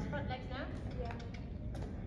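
Indistinct woman's voice talking at a distance, mostly in the first second, over a steady low rumble of room and microphone noise, with a few faint clicks.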